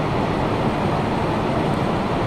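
Steady background noise with no distinct events, the room's hum picked up by the microphone during a pause in speech.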